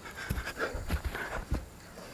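A man breathing hard in short pants after exertion, with a few dull thumps about half a second apart.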